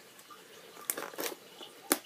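Cardboard box being opened by hand: faint rustling and handling noise, with a small click about a second in and a sharper click near the end.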